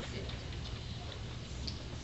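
Steady low room hum with a few faint, short clicks.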